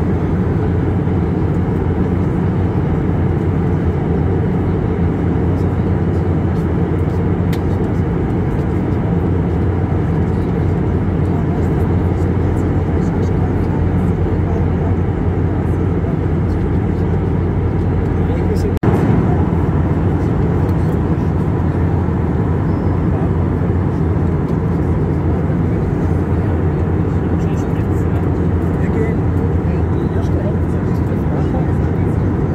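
Jet airliner cabin noise in flight beside the wing engine: a steady low rush of air and turbofan engine. There is a brief break about two-thirds of the way through.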